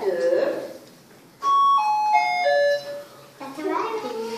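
Electronic doorbell-style chime playing four short notes, each lower than the last, over about a second and a half.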